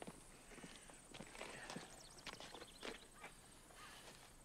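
Faint footsteps on an asphalt road, a few soft, irregular steps over quiet outdoor background.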